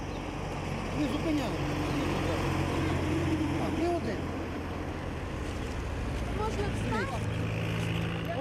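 Street traffic: truck engines running steadily as lorries pass along the road. Faint voices can be heard underneath.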